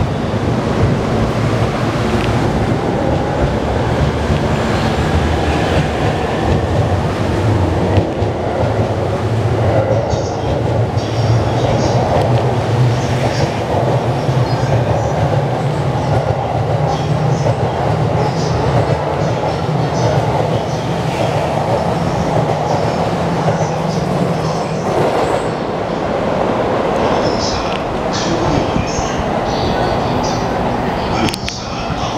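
A 15-car JR East E231 series electric train pulling out of the station and running past at close range: the steady running sound of its motors and wheels on the rails, with faint high squeaks from the wheels in the second half, until its last cars clear near the end.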